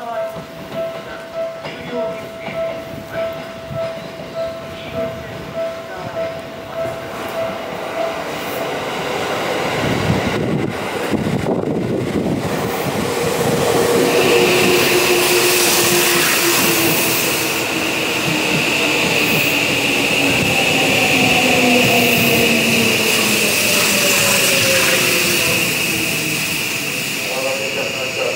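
Seibu 6000 series electric train with SiC-VVVF inverter running into the station and braking, its cars rushing past close by. The motor-inverter whine falls slowly in pitch as it slows, over a steady high tone. Before the train arrives, a warning tone pulses about one and a half times a second.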